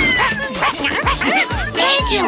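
Upbeat cartoon background music with a steady beat, over a cartoon puppy's short, high yips and barks.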